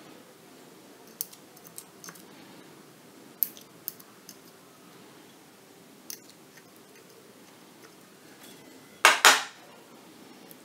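Small tools and headphone driver parts handled at a workbench: scattered light clicks, then two short, loud rasping strokes in quick succession about nine seconds in.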